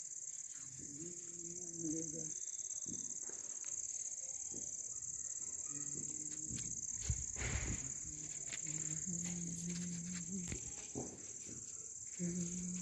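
Crickets chirring in a steady, high-pitched chorus at night, with faint voices underneath and a short noisy burst about seven seconds in.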